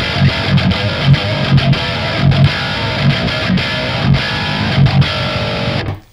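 Chapman ML-1 Pro Modern baritone electric guitar, tuned to drop F sharp and played with its pickups split, through a high-gain distorted amp: a riff of rhythmic low chugging notes under ringing higher notes, stopping just before the end.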